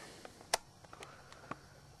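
Quiet room tone with a handful of faint, short clicks, one sharper than the rest about half a second in.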